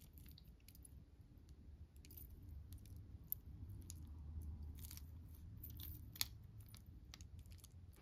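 Faint, scattered clicks and clinks of a metal chain-link charm bracelet and its heart charms being turned over in the fingers, over a low steady hum.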